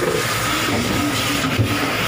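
A fishing boat's engine running steadily, a constant drone with a faint steady whine above it.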